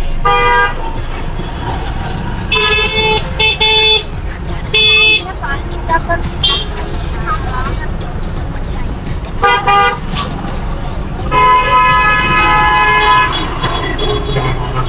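Vehicle horns honking in city traffic over a steady engine and road rumble. Several short toots come in the first five seconds, two more just before ten seconds, and one long blast of about two seconds near the end.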